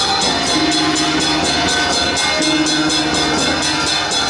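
Taiwanese temple road-opening drum troupe playing: a large barrel drum beaten with a gong and cymbals in a fast, even rhythm of about five strokes a second, loud throughout. A held low tone sounds in stretches of about a second and breaks off between them.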